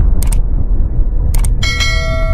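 Subscribe-button animation sound effects over a deep low rumble: a mouse click about a quarter second in, another about 1.4 s in, then a bell ding ringing on near the end.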